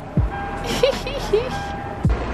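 A short burst of laughter over background music, with a deep bass thump just after the start.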